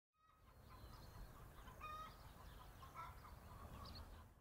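Very faint chickens clucking, with a short pitched call about two seconds in, over a low steady rumble.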